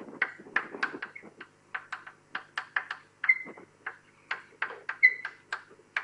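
Writing on a board: a quick, irregular run of short scratching strokes, about four or five a second, with two brief high squeaks.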